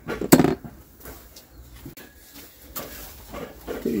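A single sharp knock about a third of a second in, then faint background with a few small clicks.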